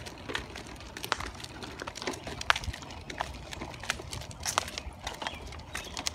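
Footsteps in sandals on an asphalt road: sharp, irregular clicks about every half second at a walking pace.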